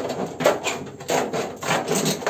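Hand shears cutting through a used corrugated zinc roofing sheet: an irregular run of short rasping cuts, about three or four a second, with the thin metal rattling.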